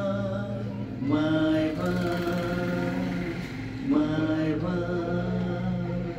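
A man singing long, drawn-out held notes into a handheld karaoke microphone, with a new phrase starting about a second in and again about four seconds in.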